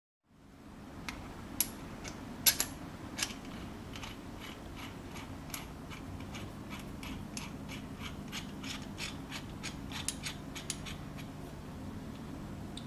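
An R8 collet being tightened into a steel slot-cutting fixture by hand: a run of light, irregular metallic clicks, a few a second, with a few louder ones between about one and three seconds in. A steady low hum runs underneath.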